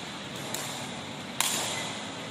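A woven sepak takraw ball being kicked: a faint sharp strike about half a second in, then a louder, sharper strike about a second and a half in, over a steady background hiss.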